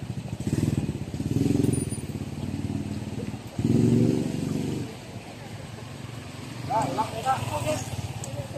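Small motorcycle engines running on a street, one passing close and loudest about four seconds in, then fading.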